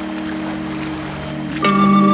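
Background music of held, steady notes, with a louder, fuller chord coming in near the end.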